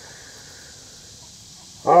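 Faint, steady, high-pitched chorus of insects in the woods, a continuous drone with no breaks; a man's voice starts near the end.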